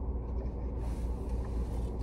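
Steady low hum of an idling car heard inside its closed cabin, with faint rustling coming in about a second in.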